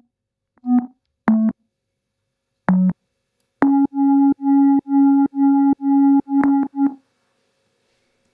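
Software synthesizer lead layer played on its own. A few separate notes come at slightly different pitches, then from about three and a half seconds in there is a run of repeated notes at one pitch, about two a second, ending with a couple of short ones about a second before the end.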